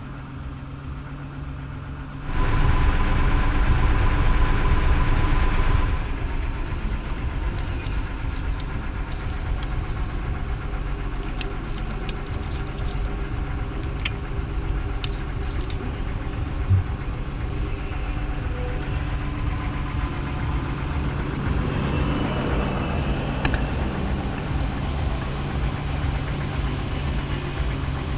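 Nissan pickup engine starting about two seconds in and running loud for a few seconds, then idling steadily. A single short thump comes partway through.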